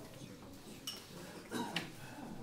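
Glass clinking twice, about one and two seconds in, over a low murmur of voices in a pub room.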